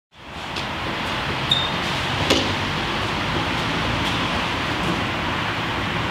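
Steady background hiss of outdoor ambience that fades in at the start, with a few faint clicks and a brief high beep about a second and a half in.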